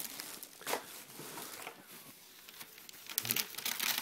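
Wrapping paper and a plastic gift bag rustling and crinkling as presents are handled in a cardboard box, getting busier near the end as the paper starts to tear.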